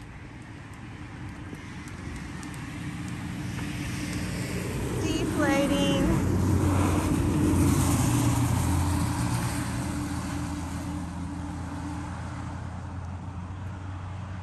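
Road traffic outside: a vehicle passing, its noise swelling over several seconds to a peak and then fading, over a steady low hum. A short falling high-pitched call cuts through about five seconds in.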